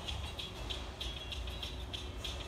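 Elevator car in motion, heard from inside the closed cab: a steady low rumble with faint, irregular high ticks.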